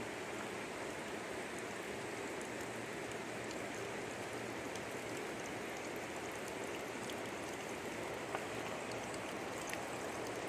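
Faint, steady rush of flowing river water, with a single small click about eight seconds in.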